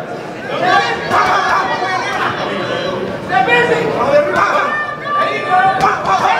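Spectators shouting and chattering at ringside during an amateur boxing bout, many voices overlapping, with a sharp smack just before the end.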